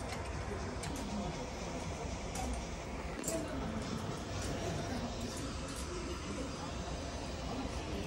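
Shop ambience: indistinct voices in the background, with a few light clicks as socks are handled on their plastic hanging hooks.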